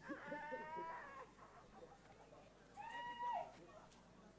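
Two drawn-out, high-pitched vocal cries from a person: a wavering one in the first second and a shorter held one about three seconds in.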